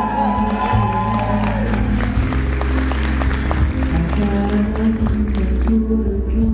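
Live ballad performance: a woman's voice holds one long sung note over sustained low piano or keyboard accompaniment. From about two seconds in, a run of sharp, evenly spaced claps from the audience comes in over the accompaniment.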